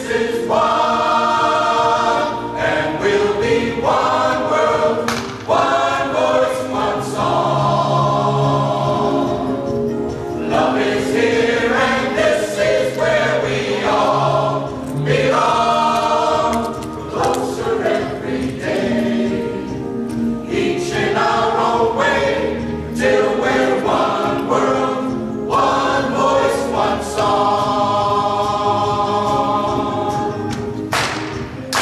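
Mixed choir of men's and women's voices singing together, loud and continuous, with short breaths between phrases.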